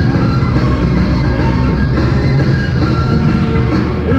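A live progressive rock band playing an instrumental passage on keyboards and synthesizer, bass and drums, at a steady loud level with held keyboard notes over the rhythm section.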